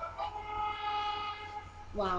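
A single held note, steady in pitch, lasting about a second and a half.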